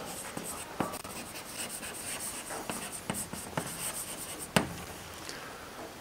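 Chalk writing on a blackboard: a run of short scratchy strokes, with two sharper taps of the chalk, one about a second in and one near the end.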